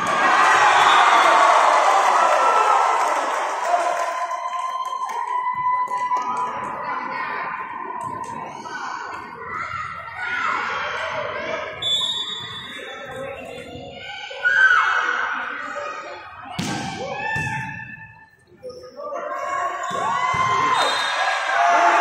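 Players and onlookers shouting and calling in a large gym hall, with the thuds of a volleyball being struck. One sharp hit stands out about two-thirds of the way in.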